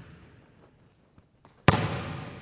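A basketball slammed once onto a hardwood gym floor: a sharp bang about a second and a half in, with a long echo through the large gym.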